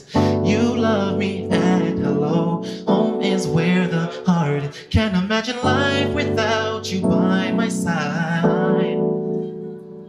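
A man singing over sustained chords played on a Roland FP-4 digital piano, the chords changing every second or two. Near the end the playing and singing drop away and it goes quieter.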